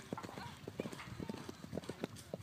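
Hoofbeats of a horse cantering on turf toward a cross-country fence, a quick, uneven run of dull thuds on the approach to take-off.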